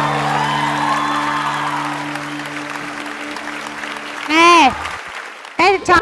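Studio audience applause over a sustained background music chord, both fading away; the music stops about four seconds in.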